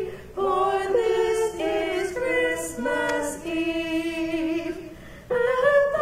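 A small mixed church choir singing in held, sustained phrases, with breaths between phrases just after the start and about five seconds in.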